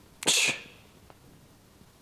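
A man's sharp, forceful exhale as he presses a barbell overhead, one rep of a light warm-up set of standing overhead presses. One short hissing breath about a quarter of a second in.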